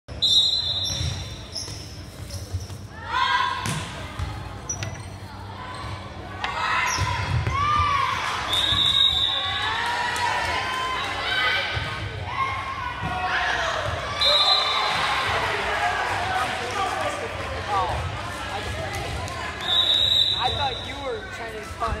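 Volleyball match in a gym: a referee's whistle gives four short blasts, near the start, about 9 s in, about 14 s in and about 20 s in. Between the blasts come a couple of sharp ball hits and players and spectators shouting and cheering.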